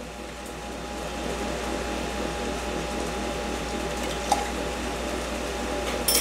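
An air fryer running: a steady fan whir with a faint constant hum, and one light clink about four seconds in.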